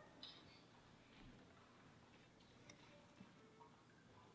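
Near silence: room tone of a concert hall, with a few faint ticks and rustles.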